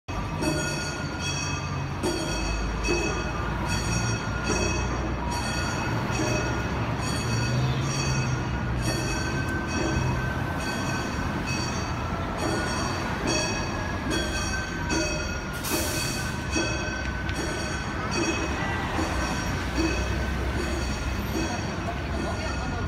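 Gion-bayashi festival music: a regular clanging beat of small brass hand gongs (kane) with steady ringing overtones and a flute line, over a low rumble of street traffic.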